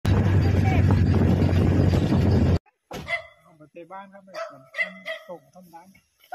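Wind buffeting the microphone, loud and heavy in the lows, cutting off abruptly about two and a half seconds in. It is followed by a run of quieter short calls.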